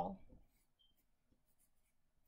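A pencil writing a word on a paper worksheet, faint.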